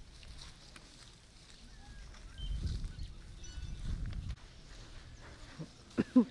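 Faint outdoor ambience, with a low rumble for about two seconds in the middle and a few faint high chirps.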